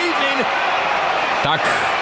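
A wrestler slapping the ring canvas with his hands, thuds over the steady noise of an arena crowd.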